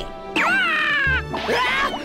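Background music with a cartoon character's long cry that falls in pitch, starting about a third of a second in. A bass line enters in the music about a second in.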